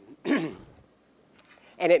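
A man clears his throat once, briefly, then he starts speaking again near the end.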